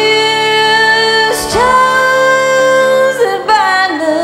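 A woman singing a slow country-tinged ballad over guitar accompaniment: two long held notes, each sliding up into its pitch, then falling slides near the end.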